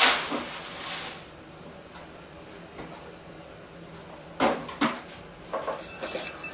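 Plastic cat toilet-training pan being handled and fitted into a toilet bowl: a loud rustling scrape at the start, then a few sharp plastic knocks near the end as it is set in place.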